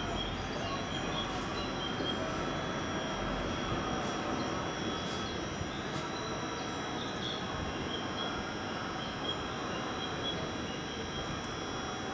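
Steady running noise of a JR West electric commuter train standing at the platform: its air-conditioning and electrical equipment give an even hum with a faint, constant high whine.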